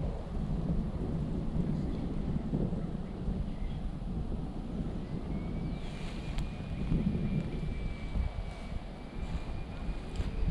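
Wind buffeting the microphone outdoors, an uneven low rumble that swells and fades, with a faint thin high tone held steady through the second half.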